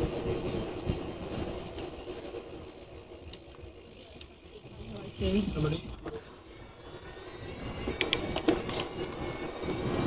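Riding noise of an e-bike on a forest path: uneven low rumble of wind and tyres on the camera's microphone. A brief low voice sound comes about five seconds in, and a few sharp clicks follow near eight seconds.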